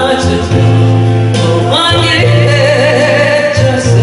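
A woman singing a Korean song live into a microphone over amplified backing music; about two seconds in her voice slides up into a held note.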